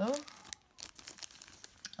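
Small clear plastic bags of beads crinkling as they are handled, a run of short irregular crackles.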